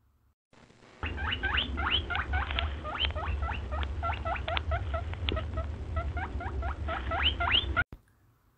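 Rabbit squeaking: a quick run of short, rising squeaks, about three or four a second, over a low rumble. It starts about a second in and stops just before the end.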